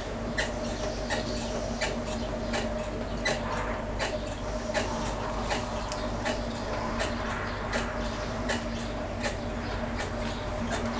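Potter's wheel motor running with a steady hum while a clay bowl is shaped on it, with a scatter of short, irregular clicks and squeaks throughout.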